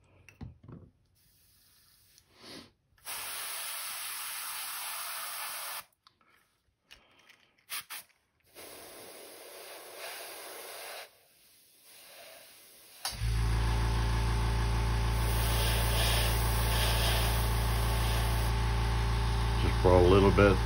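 Airbrush spraying in two hissing bursts a few seconds each. About two-thirds of the way in, its air compressor switches on and runs with a steady low hum.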